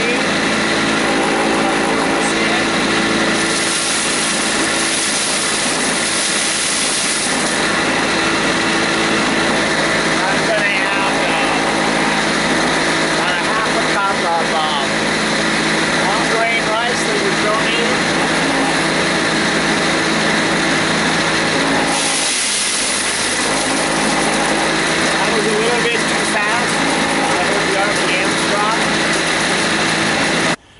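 Homemade impact rice huller running steadily: its motor-driven impeller gives a loud hum of many steady tones. Rice fed through it adds a hiss for a few seconds, about three seconds in and again past the twenty-second mark.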